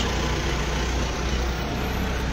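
Steady engine drone with an even hiss from a pickup truck carrying a motorized pesticide sprayer, running in the street while it sprays insecticide.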